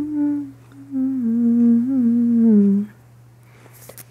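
A person humming a tune with a closed mouth: a short phrase, then a longer one that slides down in pitch at its end. Under it runs a steady low hum from an air conditioner.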